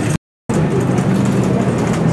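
Shopping cart rolling over a hard store floor, a steady rumble and rattle with a low hum. It is broken by a brief dead silence at an edit cut a quarter second in.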